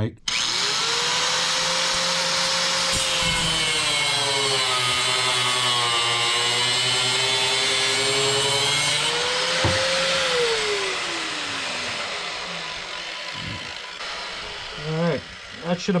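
Angle grinder starting up and cutting off the end of a steel bolt, its whine sagging in pitch while the disc bites into the bolt. About ten seconds in it comes off the cut and is switched off, its whine falling away as the disc spins down.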